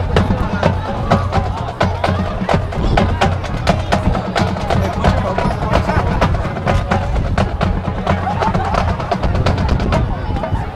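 Marching band drumline playing a percussion cadence: rapid sharp drum and stick hits over a steady low bass-drum line.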